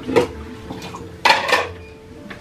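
A few sharp clinks and knocks: one about a fifth of a second in, then two close together just over a second in.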